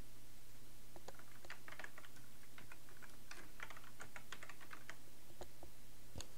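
Typing on a computer keyboard: a quick run of keystrokes for about four seconds, starting about a second in, then a couple of single key presses near the end.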